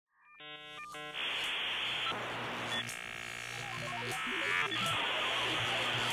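Electronic intro sound effect for a robot logo: runs of computer-like beeps and tones alternating with hissing static, muffled like a telephone line.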